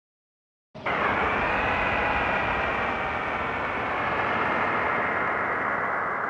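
A steady, dense vehicle-like noise with several held high tones, cutting in abruptly out of silence about a second in.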